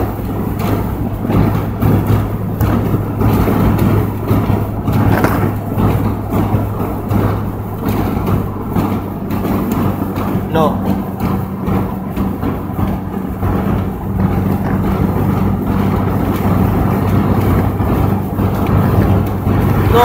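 Inside a moving car's cabin: a steady low engine drone over continuous road and wind noise. A brief voice sound comes about halfway through.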